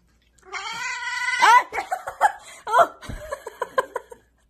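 A cat vocalizing while eating a lickable squeeze-tube treat: one drawn-out call about a second long, then a quick run of short, wavering cries, several a second.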